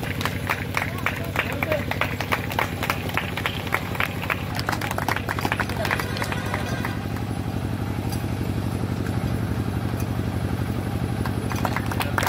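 A small group applauding with scattered hand claps that die away about halfway through, leaving a steady low hum.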